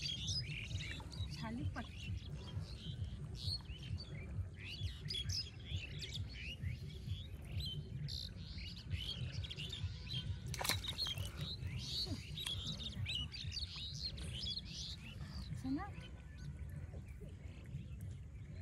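Many small birds chirping and twittering without pause over a steady low rumble. A single sharp click about ten and a half seconds in.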